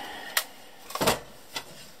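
A sharp click and a couple of lighter knocks as hands handle an Allen-Bradley ControlLogix chassis and its power supply.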